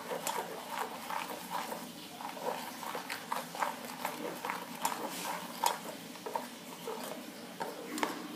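Yellow plastic spatula stirring foaming soap and glue in an enamel bowl, with many small irregular clicks and crackles.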